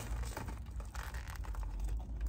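Close-up eating sounds: a foil-lined fast-food sandwich wrapper crinkling in the hands while a fried chicken sandwich is bitten and chewed, a quick run of small crackles over a low steady hum.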